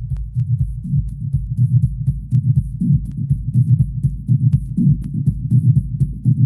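Techno track: a throbbing, pulsing bass line with quick, thin hi-hat ticks running above it.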